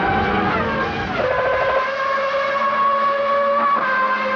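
Formula One racing car engine at high revs, its pitch sliding down in the first second as it goes by, then holding a steady high-pitched note.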